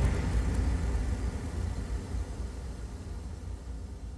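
The fading tail of a TV programme's intro jingle: a noisy, rumbling wash with no clear notes that dies away steadily.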